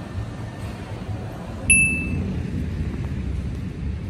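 Steady low background rumble, with one short high-pitched ding a little under two seconds in that rings briefly and fades.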